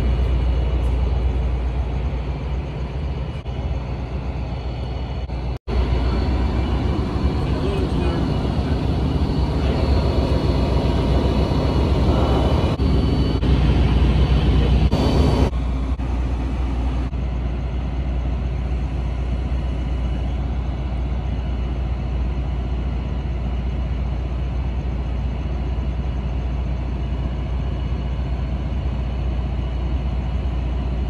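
Siemens Charger SC-44 diesel-electric locomotive standing at a platform with its engine idling: a steady low hum with engine tones. The sound drops out for an instant about six seconds in.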